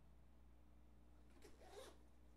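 Near silence with a steady low hum, broken about three quarters of the way through by a brief, faint rustle or scrape lasting about half a second.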